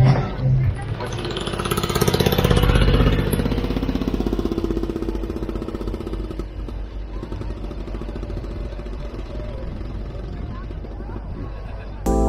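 Bond Minicar's single-cylinder Villiers two-stroke engine phutting away, a rapid, even popping that is loudest a couple of seconds in and then slowly fades.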